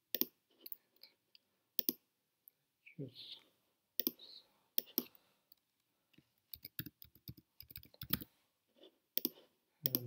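Computer mouse clicks and keyboard keystrokes: scattered sharp single clicks, with a quicker run of key presses about seven seconds in.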